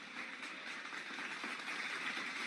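A large seated audience applauding in a big hall: an even, steady clapping heard fairly faintly.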